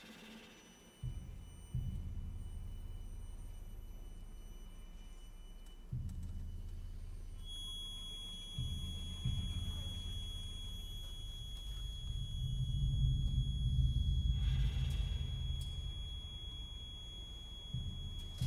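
Deep, low drum rolls in a contemporary chamber-music piece: soft rumbling strokes that come in suddenly several times and swell to a peak about two thirds of the way through. A faint high held tone sounds above them from about halfway.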